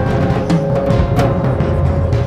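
Instrumental band music: a drum kit playing under a held note, with hits about half a second and just over a second in.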